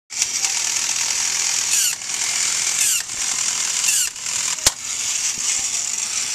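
A battery-powered toy walking robot running: its small motor and gears whir with a steady mechanical clatter, and the pattern shifts about once a second. A single sharp click comes about three-quarters of the way through.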